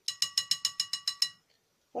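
A rapid run of evenly spaced ringing clicks, about twelve a second, lasting just over a second and then stopping.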